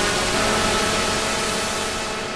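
Mayer EMI MD900 virtual-analog synthesizer playing a noise-heavy pad texture: a steady rushing hiss over held chord tones, with a new note entering about a third of a second in. The sound begins to fade near the end.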